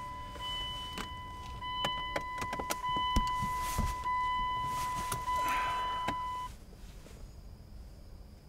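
A steady high-pitched electronic tone that cuts off suddenly about six and a half seconds in, with clicks and rustling from wires and a loose speaker being handled.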